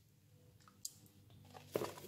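Faint handling sounds of hands picking up pieces of raw pork from a bowl: one small tap a little under a second in, then a short rustle and knock near the end.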